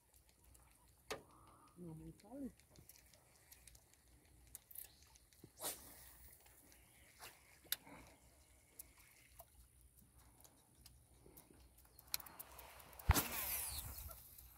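Mostly quiet, with scattered faint clicks and a brief faint voice about two seconds in. About a second before the end comes a louder burst of noise with a sharp knock.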